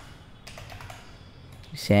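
A few scattered keystrokes on a computer keyboard, typed at an unhurried pace.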